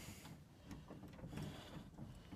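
Near silence: faint background noise with a few soft clicks.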